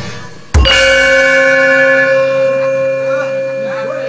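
A Javanese gamelan ensemble's closing stroke: metal keys and gong struck together once, about half a second in, then ringing on as a chord of steady tones that slowly fades.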